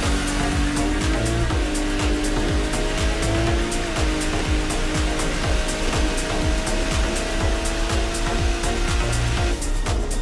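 Music with a steady beat over a drag car's engine at full throttle: the Fox Body Mustang's turbocharged Ford Barra straight-six, its pitch climbing and dipping briefly at gear changes about one and a half and four seconds in, then holding steady.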